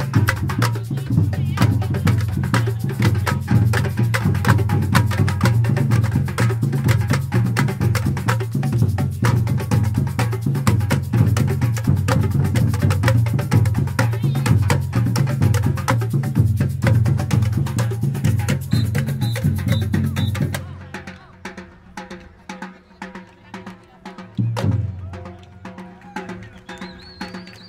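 Street drum group playing a fast, driving rhythm on large bass drums, snare drums and small hand-held frame drums. The drumming cuts off abruptly about twenty seconds in, leaving much quieter background sound.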